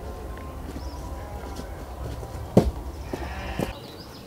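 Two sharp knocks about a second apart, the first the louder, over a steady low rumble.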